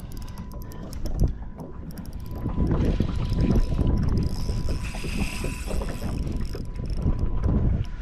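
Wind rumbling on the microphone over water slapping around a small boat, growing louder about two and a half seconds in, with a faint steady high tone throughout.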